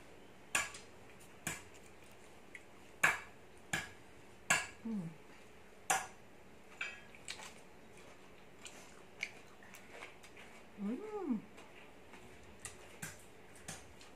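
A person eating green papaya salad with her fingers: a string of sharp mouth smacks and clicks while chewing, roughly one a second, with two short hummed 'mm' sounds, one about five seconds in and one near eleven seconds.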